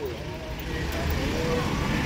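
Steady rumble of road traffic going past, with faint voices in the background.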